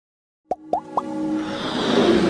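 Logo-animation sound effects: after half a second of silence, three quick pops, each rising in pitch, about a quarter second apart, then a swelling whoosh that builds into electronic intro music.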